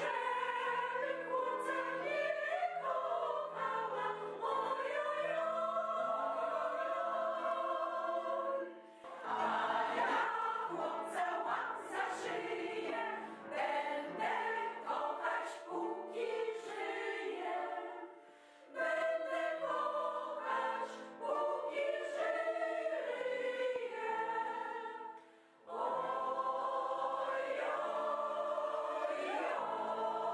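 Mixed choir of senior women and men singing together in parts. The singing breaks off briefly between phrases about nine, eighteen and twenty-five seconds in.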